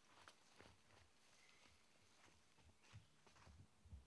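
Near silence: faint outdoor ambience with a few soft, scattered clicks and rustles.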